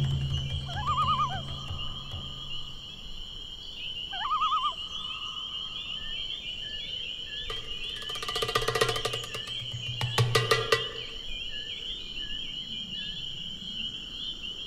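Horror-film sound design over a night-forest backdrop of steady insect chirring. A low drone fades out over the first few seconds. Two short warbling tones come about a second and four seconds in, and bursts of dry rattling clicks come around eight and ten seconds in.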